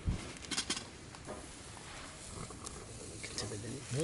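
Burger patties on a charcoal grill: a knock at the start, a few light clicks, then faint steady sizzling.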